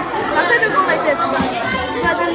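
Crowd chatter: many voices talking over one another at once, steady throughout.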